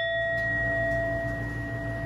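Metal singing bowl struck once, ringing on with a low tone and a clear higher one. Its uppermost overtones die away within about half a second while the two main tones slowly fade.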